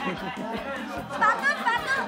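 Several people talking and calling out over one another, with a low thudding beat underneath.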